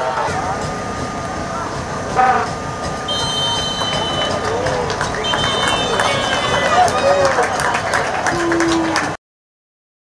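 Pitch-side stadium sound at a football match with no commentary: scattered shouts and voices from players and the small crowd over a steady background hum, with a few high-pitched tones in the middle. The sound cuts off suddenly near the end.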